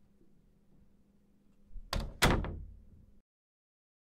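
A door shutting: a click and then a heavier thud about two seconds in, fading away, over a faint steady hum. The sound then cuts off to silence.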